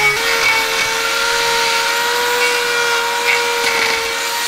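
Electric grinder with a hoof-trimming disc running steadily with an even whine as it grinds down a cow's hoof.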